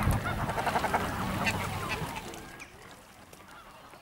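A flock of waterfowl calling on a pond, with honking and quacking, louder in the first two seconds and fading away toward the end.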